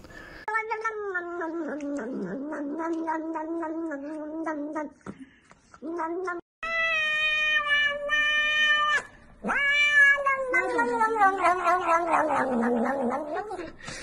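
Domestic cat meowing in long, drawn-out calls: a long one, a short one, then two more long ones, the last falling in pitch.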